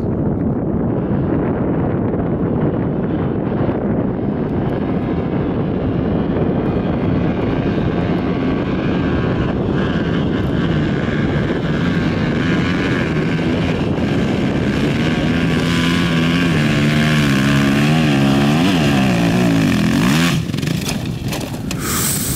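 Two-stroke enduro dirt bike engine running hard up a steep rocky climb. The revs rise and fall quickly with the throttle in the second half, and the engine note breaks off about two seconds before the end.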